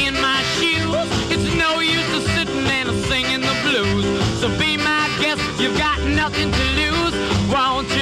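Upbeat rock and roll music with a steady beat and a wavering lead melody.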